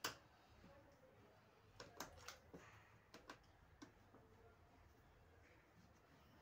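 Near silence broken by a few faint, sharp clicks and taps of a screwdriver and hands on the plastic pump assembly of a washing machine: one at the start, a small cluster about two to three seconds in, and one more near four seconds.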